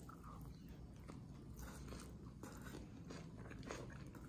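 Faint chewing of a mouthful of soft cheesy egg, with a few soft mouth clicks.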